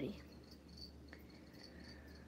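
Faint crickets chirping: a steady train of short, high chirps a few times a second over a low, steady hum, with one faint click about a second in.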